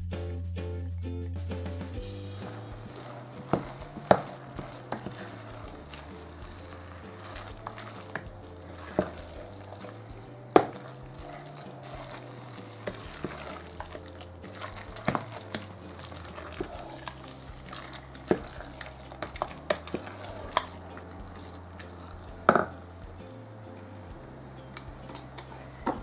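Wooden spoon stirring a thick, wet rice mixture in an enamel pot, with sharp knocks of the spoon against the pot every few seconds.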